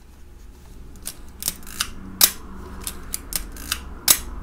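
Leica M3 rangefinder camera's mechanism clicking as it is worked by hand with its baseplate off: about ten sharp metallic clicks, the loudest a little past two seconds in.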